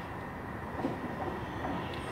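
West Midlands Railway Class 323 electric multiple unit drawing into the station, heard as a steady, fairly quiet train sound as it approaches.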